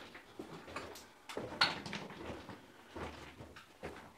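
Quiet footsteps crunching on leaf litter and loose stone over the rock floor of a narrow mine tunnel, a few irregular steps.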